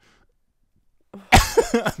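After a brief hush, a person bursts out laughing about a second in, loud and sudden.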